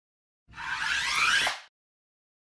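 A whoosh sound effect for a logo intro: a hissy swell about a second long that builds and then dies away quickly.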